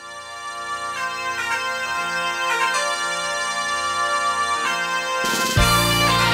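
Music fading in: held chords, growing steadily louder, then a fuller, louder section with bass and beat coming in about five seconds in.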